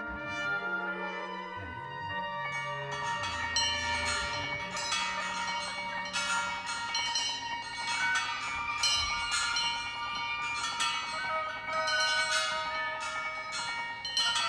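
A contemporary chamber ensemble playing live: held brass and wind notes, then from about two and a half seconds a dense run of struck, bell-like metallic notes that ring on over the sustained tones.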